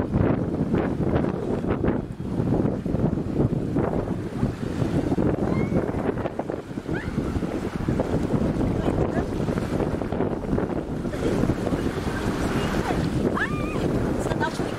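Wind buffeting the camera microphone over small waves washing onto a sandy shore.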